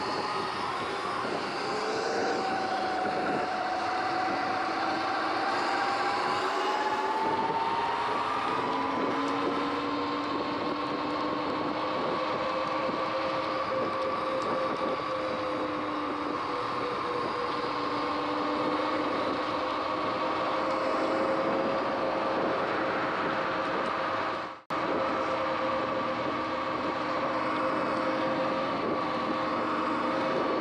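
Electric bike motor whining steadily at cruising speed over road and wind noise, rising slightly in pitch in the first few seconds and then holding. The sound cuts out for an instant about three-quarters of the way through.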